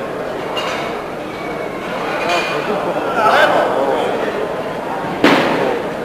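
Indistinct voices echoing in a large hall, with one sharp metallic clank of the loaded barbell and its iron plates near the end.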